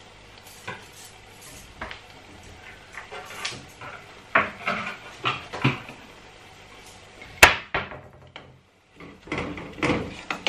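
Kitchen clatter of cookware being handled: scattered knocks and clinks of a glass pot lid, a spoon and a non-stick pot, the loudest a single sharp clink about three-quarters of the way through.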